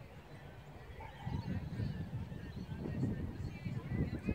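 Gusty wind buffeting a phone microphone, a low rumble that picks up about a second in, with faint bird chirps above it.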